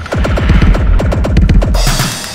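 Sampled "vortex tornado" effect from an Akai MPC Essentials Jailhouse drum kit opening a looped electronic beat: a rapid run of falling pitch sweeps over a heavy bass for nearly two seconds, giving way to plain drum hits near the end.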